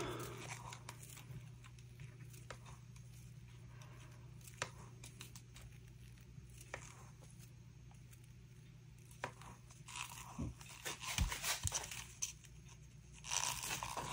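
Quiet handling of plastic resin mixing cups and a stir stick: a few faint, scattered clicks, then a cluster of small knocks and taps over the last few seconds, under a faint steady hum.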